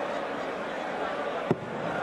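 Steady murmur of a large arena crowd, with one sharp thud about one and a half seconds in as a steel-tipped dart strikes the dartboard.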